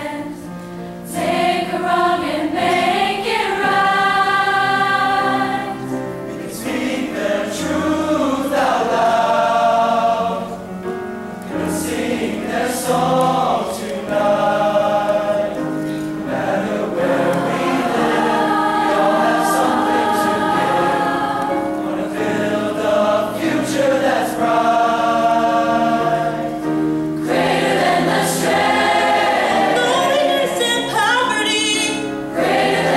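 Large mixed high-school choir singing in many voices, in phrases of long held chords that swell and break every few seconds, with piano accompaniment underneath.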